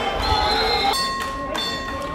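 Two steady electronic-sounding tones in turn over low background noise: a high one for most of the first second, then a lower one for about half a second.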